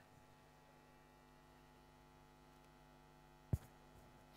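Faint steady electrical hum from the sound or recording system, with one sharp click about three and a half seconds in.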